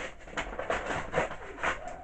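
Plastic blister packaging crackling and clicking in irregular short bursts as it is pried open by hand.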